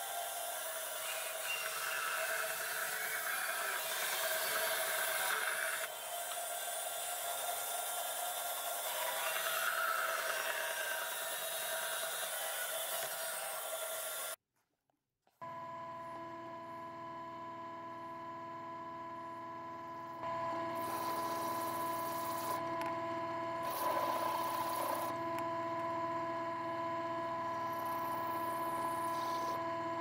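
A bandsaw cutting a wooden knife-handle blank, then, after a brief silence, a drill press running with a steady hum and drilling a hole into a thin steel blade, the drilling getting louder partway through.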